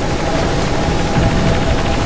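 Steady rumbling drone of a flying craft's engines, mixed with trailer music.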